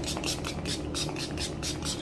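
Pump-action mattifying priming spray misting onto the face in a quick run of short spritzes, about five or six a second, stopping near the end.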